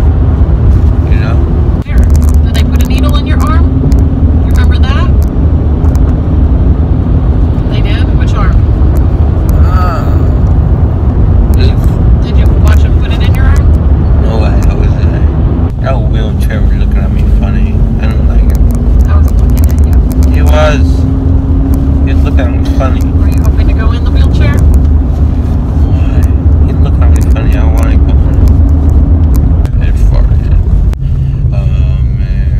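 Steady road and engine rumble inside a moving car's cabin, the engine note rising slowly about halfway through as the car picks up speed. A slurred, mumbling voice comes and goes over it.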